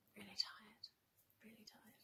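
A woman's quiet, whispery speech in two short murmurs, too soft to make out.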